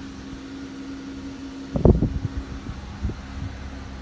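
Steady low hum inside a car's cabin, with one loud thump a little before the middle and a few softer knocks after it.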